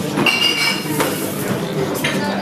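A brief clink of glass or metal ringing for about half a second, followed by a sharp knock about a second in.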